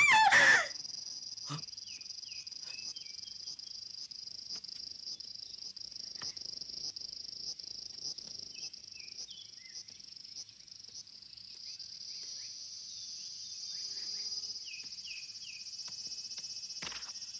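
A harmonica phrase ends about half a second in, followed by a steady, high-pitched insect chorus with a few short chirps scattered through it.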